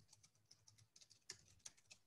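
Near silence with faint, irregular clicks of computer-keyboard typing over an open call microphone, two keystrokes a little louder near the end.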